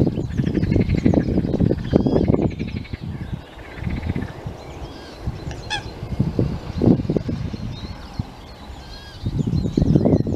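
Eurasian coot adult and chicks calling: thin high peeps come throughout, with one short, sharp call about six seconds in. Uneven low rumbling runs underneath, louder at the start and the end.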